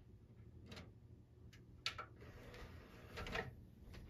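Faint handling sounds as a DVD is loaded into a Blu-ray disc player: a few light plastic clicks, the sharpest about two seconds in, then a short rattle near the end.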